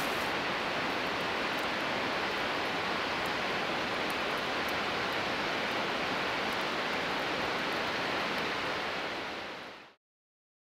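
Steady rush of falling water, fading out over the last second or so.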